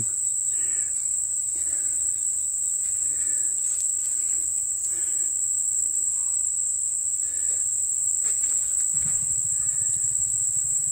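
Steady high-pitched insect chorus, one unbroken shrill note.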